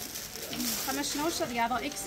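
Mostly a voice: low, gliding speech-like sounds with no other clear sound standing out.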